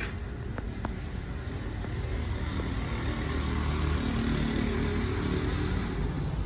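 Low rumble of a motor vehicle engine running, growing louder from about two seconds in and then holding steady.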